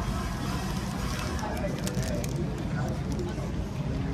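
Street and shop ambience: a low steady traffic rumble with background chatter of people, and a few faint clicks.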